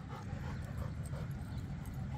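A dog's faint panting, over a low steady rumble.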